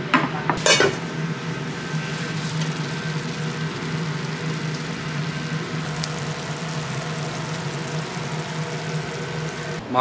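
Tomato-and-onion gravy sizzling and simmering in a frying pan, over a steady low hum. A couple of sharp clinks of a utensil against the pan come in the first second.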